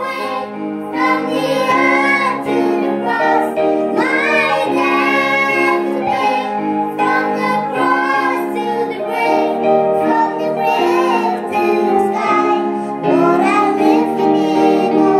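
Children singing a song together, a girl's voice leading through a microphone, over an electronic keyboard playing sustained chords.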